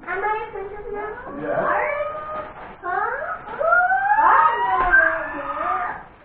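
Several high, wavering voices sliding up and down in pitch and overlapping one another, loudest in the second half.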